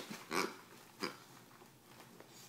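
American bulldog making two short grunts with her face at a plush toy, the first about a third of a second in and a fainter one about a second in.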